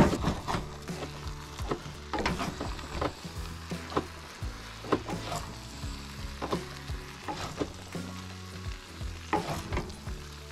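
A wooden spoon scraping and knocking in a cast-iron skillet as pasta is dished out onto an enamel plate: repeated sharp clicks and scrapes, over a steady low hum and the sizzle of food in the pans on the camp stove.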